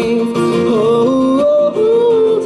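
Male voice singing held, sliding notes with no clear words into a microphone over strummed acoustic guitar, with a brief break in the voice near the end.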